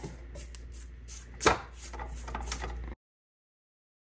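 Silicone spatula scraping around the sides of a stainless steel stand-mixer bowl of frosting, with one sharp knock about halfway through. The sound then cuts out to dead silence.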